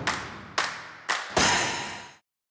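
Percussive hits of a comedy show's closing title sting: a handful of sharp strikes, the last one ringing on longer before cutting off suddenly.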